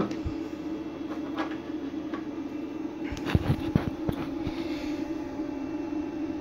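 Steady low hum from running electronic equipment, with a few soft knocks and clicks between about three and four and a half seconds in.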